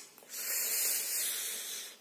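A man's long, breathy exhale with no voice in it, lasting about a second and a half: a weary sigh.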